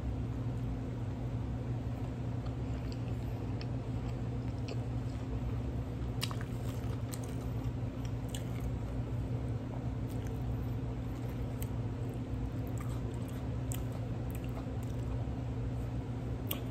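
A person chewing a mouthful of loaded cheeseburger, with faint wet mouth clicks, over the steady low hum of an air fryer running.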